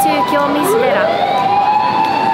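A vehicle siren winds up smoothly from low to high pitch about half a second in and holds, with steady high tones underneath, over street noise.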